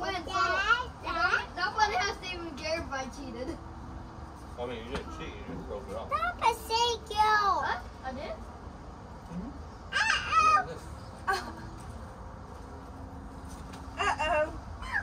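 Young children's voices, high-pitched chatter in short bursts with brief pauses, quieter for a couple of seconds a little past the middle.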